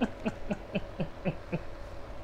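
A man's held-back laughter: short, soft 'ha' pulses, about four a second, each falling in pitch.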